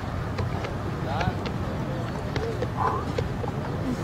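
Open-air training-pitch ambience: a steady low rumble, with short, distant calls from players and a few faint ticks of footfalls and contact.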